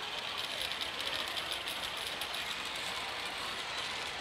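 Pachislot hall din: a steady wash of machine noise with a fast, dense metallic clatter over it.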